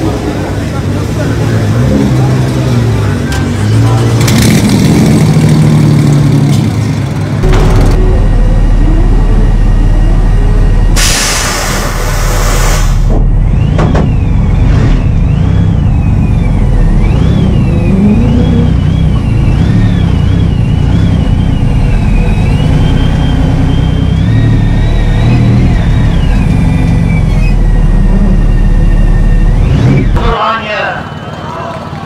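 Twin-turbo V6 of a 1200 hp Nissan GT-R R35 race car running loud, its pitch rising and falling with throttle. A loud hiss cuts in about eleven seconds in and lasts about two seconds.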